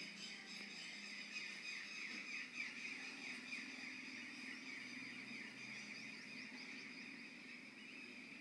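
Faint machinery at a stone-crushing plant: high-pitched squeals repeating several times a second over a low steady hum.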